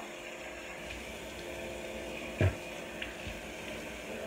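Tap running steadily into a bathroom sink, with one short knock about two and a half seconds in.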